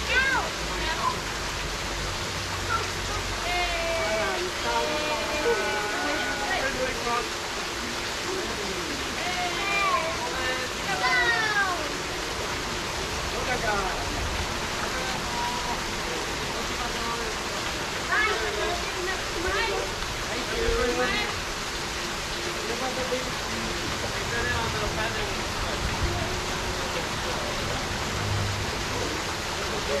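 Steady rush of water from a pool's stone waterfall feature spilling into the pool, with indistinct voices talking over it.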